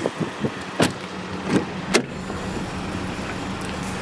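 Three short, sharp clicks, about a second in, at about one and a half seconds and just before two seconds, over a steady low hum.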